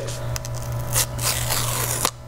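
The paper pull-tab seal strip of an iPhone box being torn off: a dry ripping of paper with a few stronger pulls along the way.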